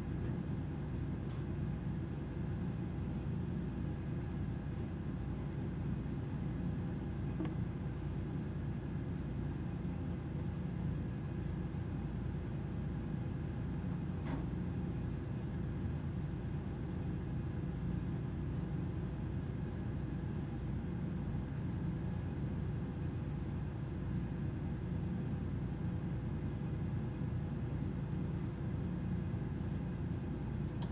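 Steady low mechanical rumble with a faint constant hum, unchanging throughout, typical of a ship's running machinery heard on board; a single faint tick about 14 seconds in.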